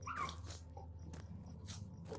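Faint crunching footsteps and a few scattered clicks over a low steady hum.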